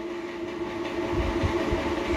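A steady mechanical drone holding a few level tones, with a low rumble that builds from about a second in.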